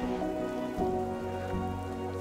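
Clams sizzling in oil in a pan as they are stirred with a wooden spatula, under slow background music.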